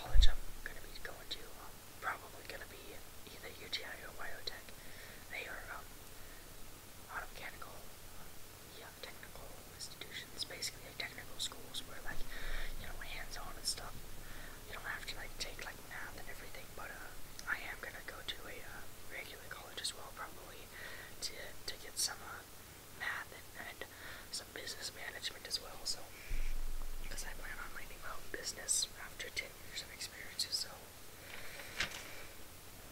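Soft, close whispered speech throughout, with small mouth clicks. There is a brief low thump just at the start.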